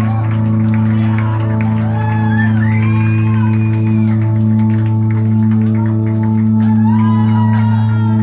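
Electric guitar hung up by its strap and left plugged in, ringing on through its amplifier as a steady low feedback drone. Shouts from the audience rise over it about two seconds in and again near the end.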